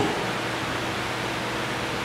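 A steady, even hiss of background noise with a faint low hum, with no change through the pause.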